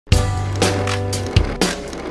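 Upbeat children's song music: a bass line and pitched backing over a steady drum beat, about two hits a second.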